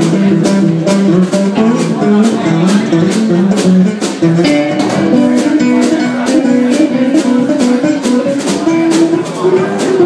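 Live band playing an instrumental passage: guitar lines over a drum kit keeping a steady beat on the cymbals.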